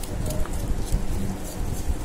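A hand utensil beating oil and grated jaggery in a glass bowl: irregular, rapid knocking against the bowl with some scraping.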